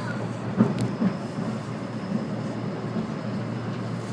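Running noise of a 485-series electric train car heard from inside, a steady low rumble. The wheels clack sharply over the track about half a second in, then more lightly about a second in.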